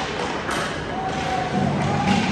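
Game noise in a large echoing hall: voices calling out over a steady din, with one sharp knock about half a second in.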